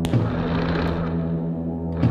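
Live electronic music: a steady low droning chord with one heavy percussive hit just after the start and a lighter click about a second in.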